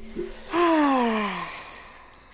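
A person's breathy vocal exclamation, a single 'ohh'-like sigh that starts about half a second in and falls in pitch as it fades over about a second.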